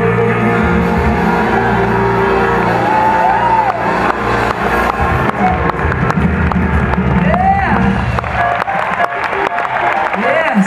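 Live gospel band music with held low notes, and a crowd cheering with scattered whoops, a rising-and-falling shout about three seconds in and again near the end.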